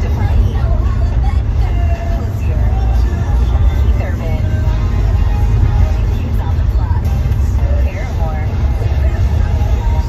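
Steady low rumble of a car's engine and tyres heard inside the cabin while driving, with fainter wavering voices or music over it.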